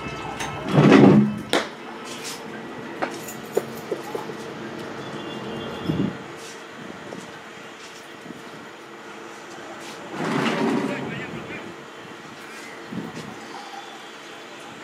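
Cricket players' voices shouting on the field: one loud call about a second in and another about ten seconds in, over a steady hum. A few sharp clicks come in the first few seconds.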